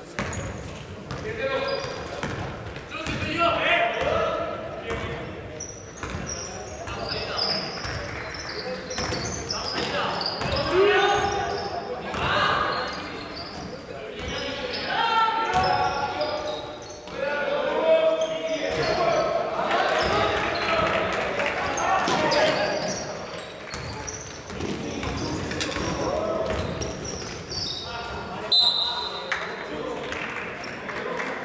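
Basketball dribbled and bouncing on an indoor court during play, with repeated knocks, under the shouts of players and spectators, all echoing in a large sports hall.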